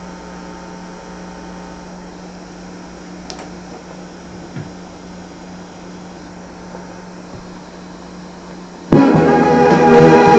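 Lasonic TRC-931 boombox giving a low steady hum and hiss with a faint click about three seconds in, then music bursts loudly from its speakers near the end.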